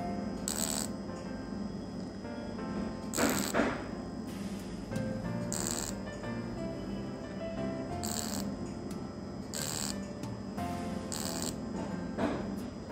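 Six short hissing bursts at uneven gaps of about one and a half to two and a half seconds: a laser handpiece firing in pulses on keloid tissue of the earlobe. Background music plays throughout.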